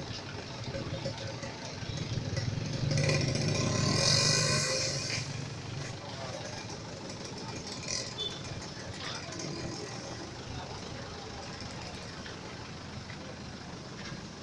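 Roadside traffic and background voices of onlookers. A vehicle passes close by, loudest about four seconds in.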